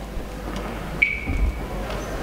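Quiet hall room noise with a few low thuds, and a single short ringing note about a second in that fades with a slight downward slide in pitch.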